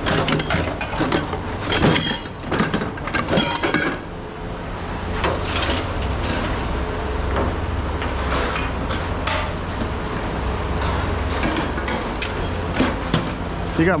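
Scrap metal pieces clanking and clinking as they are handled and dropped, busiest in the first four seconds. After that a steady low hum continues under occasional single clanks.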